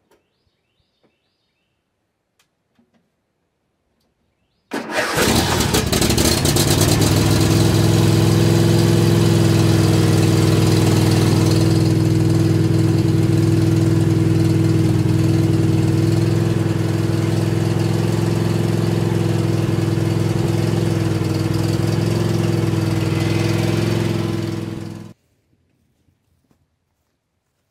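Riding lawn tractor's small engine starting about five seconds in, catching at once and then running steadily at one constant speed for about twenty seconds before cutting off near the end.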